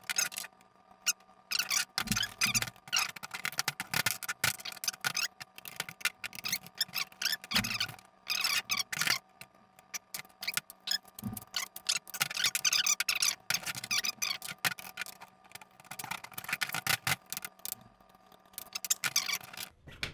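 Tippmann M4 airsoft rifle being taken apart by hand to remove a bolt shim: many irregular clicks, clacks and scrapes of its parts being pulled and set down.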